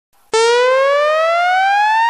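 Synthesized rising-tone sound effect: a single buzzy tone that starts abruptly just after the beginning and climbs steadily and smoothly in pitch, loud throughout.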